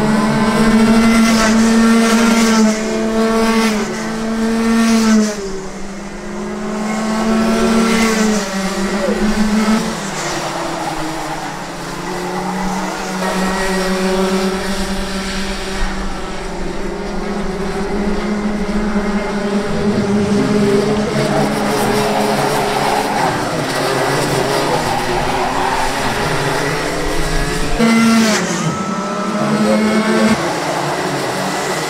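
Several Rotax 125 cc two-stroke racing kart engines running together as the karts race past. Their pitch repeatedly climbs and drops as the drivers rev up and lift off.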